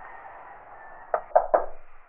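Three quick knocks on a house's front door, about a second in, over a steady background hiss.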